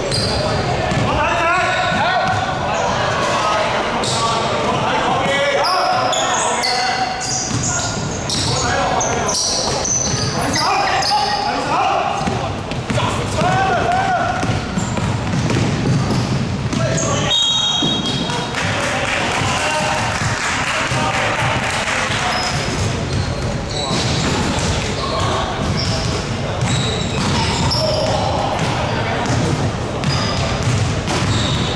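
A basketball bouncing on a hardwood court during play, with sneakers squeaking on the floor. The sound echoes through a large indoor sports hall.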